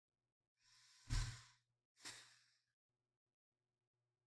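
A man breathing out heavily into a close microphone: one long breath about a second in, with a low puff of air hitting the mic, then a second, shorter breath.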